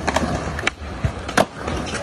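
Skateboard wheels rolling on smooth concrete with a steady rumble, broken by several sharp clacks of the board hitting the ground, the loudest about one and a half seconds in.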